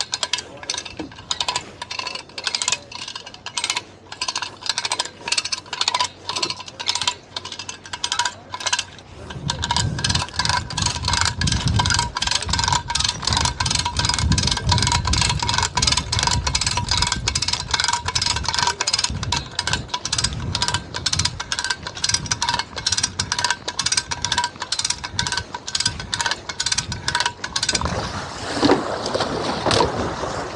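Hand come-along ratchet being cranked: a long run of sharp metallic clicks with a ringing tone as the pawl skips over the gear, winching a tipped boat off a piling. The clicking gets faster about a third of the way in and stops near the end, where a rush of noise follows as the hull drops level into the water.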